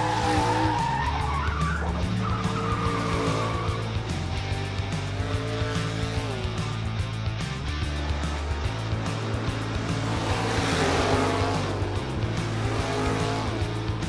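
Cartoon race car sound effects: engines revving and tyres squealing as the cars pull away from the start, over background music with a steady bass line.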